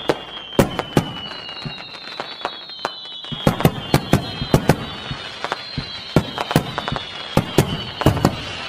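Fireworks going off: sharp bangs at irregular intervals, two or three a second, over a steady crackling hiss, with high whistles that slide slowly down in pitch.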